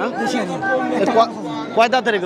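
Voices only: several men talking at once in a busy crowd.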